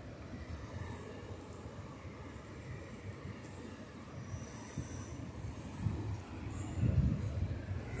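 Ocean surf washing steadily onto a rocky beach as a low rumble, with uneven gusts of wind on the microphone that swell near the end.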